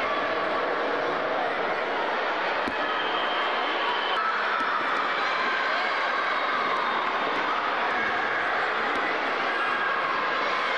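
Many children's voices shouting and chattering at once, a steady din echoing in a large sports hall, with a few short knocks through it.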